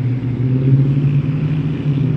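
Steady low hum of a motor vehicle engine running on a nearby street, holding one pitch without rising or falling.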